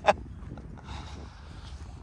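One last short burst of laughter right at the start, then steady low wind rumble on the microphone.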